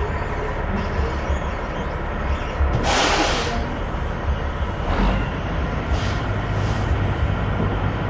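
Coach bus diesel engine running with a steady low rumble, with a loud burst of air-brake hiss about three seconds in and shorter, softer hisses later.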